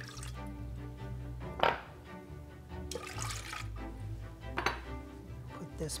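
Milk poured from a glass measuring cup into a stainless steel saucepan, over steady background music. Two short knocks break in, one about a second and a half in and one past four and a half seconds.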